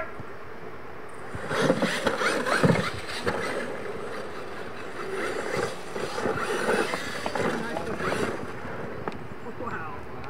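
Losi LMT radio-control monster trucks racing on a dirt track, starting about a second and a half in: electric motors whining and tyres running over dirt, mixed with shouting voices.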